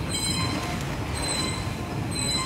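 Inclined belt conveyor running under a steady mechanical rumble, with short high-pitched squeals from its rollers about once a second.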